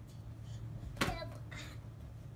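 A single sharp smack of a rubber play ball about a second in, with a short ring after it, over a steady low hum.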